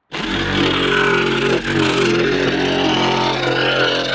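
Electric reciprocating saw running steadily, its blade cutting through the painted wooden siding of a coop wall to open a doorway.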